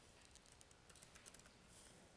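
Faint typing on a laptop keyboard: scattered key clicks, with a quick run of them about a second in.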